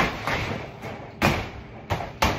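Gloved punches landing on a hanging water-filled heavy bag: four dull thuds in two seconds at an uneven pace, the first and third the hardest.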